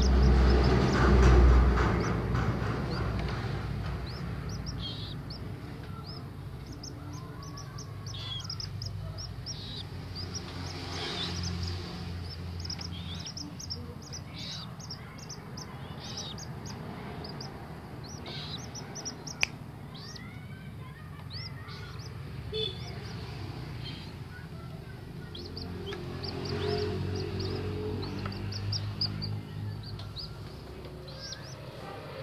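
Common moorhen chicks peeping, a steady run of short high-pitched calls. A loud low rumble sits under the first couple of seconds.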